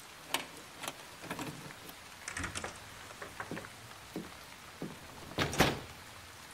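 Rain sound effect, a steady faint hiss, with scattered light knocks and clicks. A door shuts with a heavier thud about five and a half seconds in.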